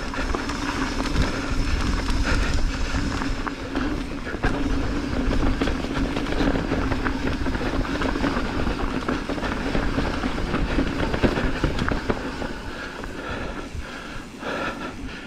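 Mountain bike rolling fast down a dirt singletrack: a steady rumble of tyres on dirt with frequent small rattles and clicks from the bike.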